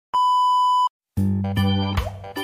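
A steady, high-pitched test-tone beep, the bars-and-tone signal of a TV test pattern, lasting just under a second and cutting off abruptly. After a brief silence, music with keyboard chords and a bass line starts.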